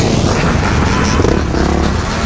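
Dirt bike engines running while riding, with low wind rumble on the microphone.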